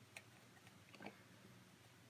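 Near silence with two faint clicks, one just after the start and one about a second in, from the plastic beadlock tool's knob being handled and threaded onto its screw over an RC crawler wheel.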